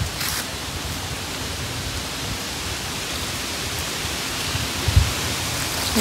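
Steady outdoor wind noise: a hiss with an uneven low rumble of wind buffeting the microphone, and a single low thump about five seconds in.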